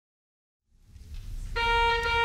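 Silence, then low church room sound fading in, and about one and a half seconds in a pipe organ starts a loud, steady held chord: the opening of a hymn.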